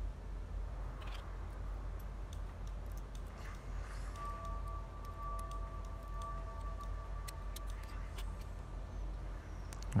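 Faint light metallic ticks and clicks of a multi-tool knife blade working against a small ball bearing, over a steady low hum. A faint steady whine of several pitches sounds from about four seconds in until near the end.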